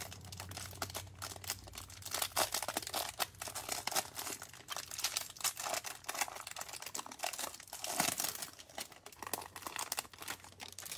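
Clear plastic wrapper around a stack of trading cards crinkling and tearing as it is pulled open by hand. It is a dense run of crackles, loudest about two and a half and eight seconds in.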